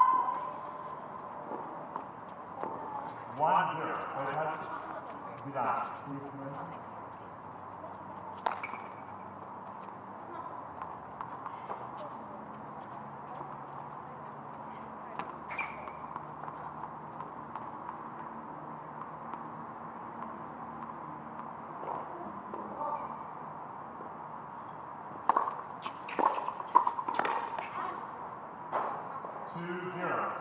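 Outdoor tennis-court ambience between points, with scattered voices: a loud short call right at the start and brief talk a few seconds in. Near the end come several sharp knocks, a tennis ball bounced on the hard court before a serve.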